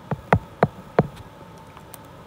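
Stylus tip tapping on a tablet's glass screen while writing, four sharp taps in the first second.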